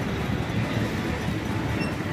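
Steady rumbling street traffic noise, including a tractor pulling a loaded trailer along the road.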